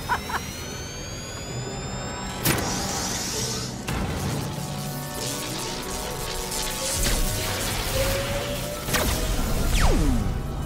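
Cartoon sci-fi device sound effects over background music: a rising whine, a sharp hit a couple of seconds in, a crackle of energy, then a long rising sweep that ends in another hit and a quick falling zap, as a force-field bubble is fired over a town.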